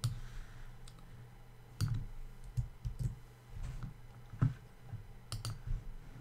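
Irregular clicks of computer keys and a mouse, about one a second, as code is copied and the view is switched from the editor to the browser.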